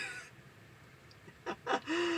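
A man giggling: a laugh trails off at the start, then after a short pause come a couple of breathy giggles and a held high-pitched vocal note near the end.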